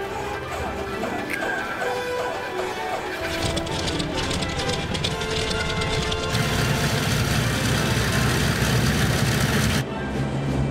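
Dramatic music score over the plane's number two piston engine being started. The engine noise builds from about three seconds in and jumps to a louder, steady running noise about six seconds in as it catches, then cuts off abruptly just before the end.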